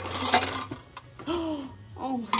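Copper charger plates and metal trays clinking and clattering against each other as one plate is pulled from a stacked pile, with most of the clatter in the first half second.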